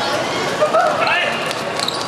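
Football match sound on a hard court: players shouting to each other, with the ball thudding off feet and the court surface in several short knocks.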